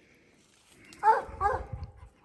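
Redbone coonhound giving two short barks about half a second apart, about a second in: its tree bark, the hound treed on a raccoon.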